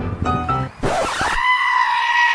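Piano music ends, then a short burst of noise and a long, high, held cry at one steady pitch that slides down as it stops.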